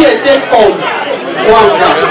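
A woman speaking into a microphone, her amplified voice filling a large hall, with chatter from the seated crowd behind.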